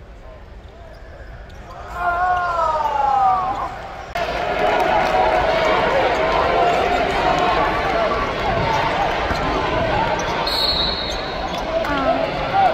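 Arena crowd chatter during a college basketball game, with a basketball bouncing on the court; a voice slides down in pitch about two seconds in, and a referee's whistle blows briefly near the end.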